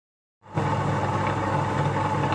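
Table-top wet grinder running, its motor and stone rollers humming steadily as they grind batter in the steel drum. The hum starts suddenly about half a second in.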